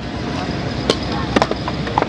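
Steady low outdoor background rumble with a few light, sharp clicks scattered through the second half.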